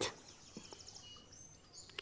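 Faint outdoor ambience: a soft high trill of insects, with a few short, thin bird chirps and whistled notes in the second half.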